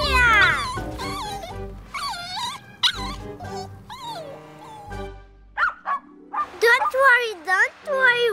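A small dog whimpering and yipping in short, high, bending calls over background music, opening with a falling glide.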